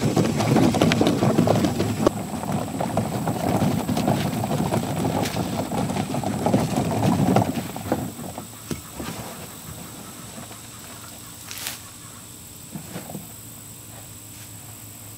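Plastic pull wagon loaded with weeds rolling along a dirt path, its plastic wheels rumbling and rattling for about seven and a half seconds. After it stops, only a few faint rustles and snaps follow.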